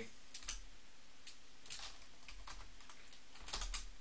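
Computer keyboard typing: a few scattered keystrokes, then a quick run of keys near the end.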